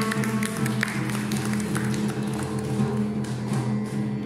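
Live instrumental music in raga Charukesi: a saxophone playing over a steady low drone, with quick drum taps keeping a bolero rhythm.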